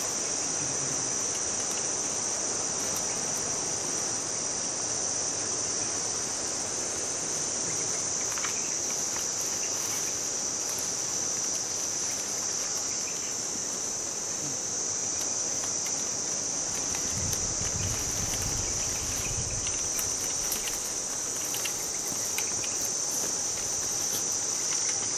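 Chorus of insects chirring steadily in a single high, shrill band, with a brief low rumble about two-thirds of the way through.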